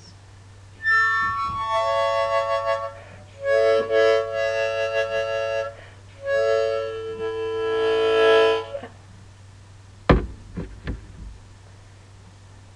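Harmonica playing a short, slow, lonesome tune in three phrases of held chords. A few brief knocks follow about ten seconds in.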